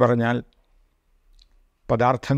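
Only speech: a man's voice lecturing in Malayalam, with a pause of about a second and a half in the middle.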